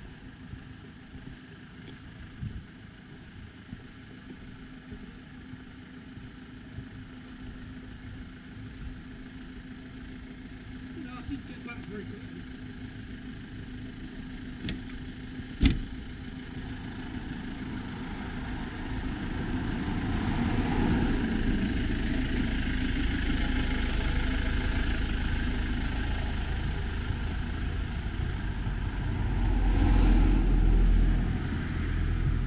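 Car on the village road: its engine and tyre noise swell from about halfway through and stay loud to the end as it draws near. A single sharp knock sounds shortly before the swell.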